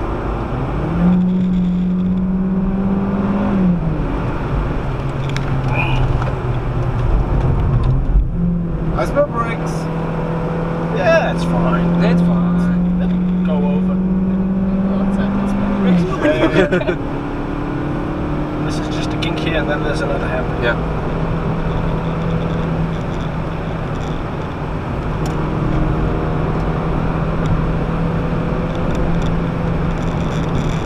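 Citroën DS3's 1.6-litre petrol engine heard from inside the cabin under hard acceleration. Its note climbs, drops at a gearchange a few seconds in, and climbs steadily again for several seconds. About halfway through it falls away sharply as the car slows, then holds a steadier note.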